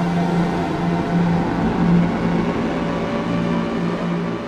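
Novation Summit synthesizer playing a drone-like patch: a low note pulsing unevenly under a dense, hissy wash of many higher tones.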